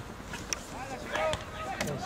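Football players shouting on the pitch as an attack builds toward goal, the shouts starting about a second in and growing, over outdoor background noise with a few sharp knocks.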